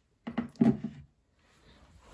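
A short cluster of clicks and knocks, lasting under a second, starting about a quarter of a second in and followed by a quiet stretch.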